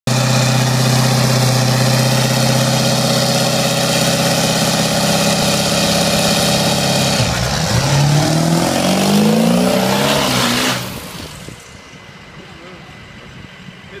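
A Ford Super Duty pickup's engine is held at loud, steady high revs, then the truck accelerates away, its pitch climbing in steps through the gears before it drops off sharply about eleven seconds in.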